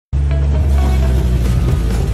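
Background music with a heavy, steady bass, starting abruptly just after the beginning.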